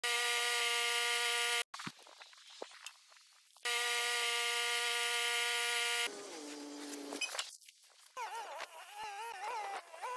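Gas engine of a Woodland Mills HM130MAX portable bandsaw sawmill running loud and steady at a high pitch while the band blade cuts a large log. The sound cuts off abruptly and returns twice. After about six seconds the pitch drops and runs lower, and near the end it wavers.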